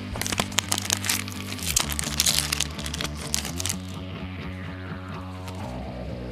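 A foil trading-card booster pack crinkling and being torn open, with many sharp crackles in roughly the first four seconds, thickest about two seconds in, over steady background music.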